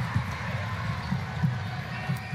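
Basketball being dribbled on a hardwood court, repeated low thumps, over the steady noise of an arena crowd.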